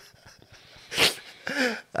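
A man's stifled laughter: a sharp breathy burst about a second in, then a short voiced laugh.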